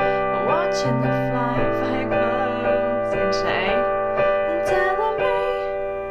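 Piano playing sustained pop chords, with the bass note changing about a second in and again shortly after. A voice sings the melody over the chords.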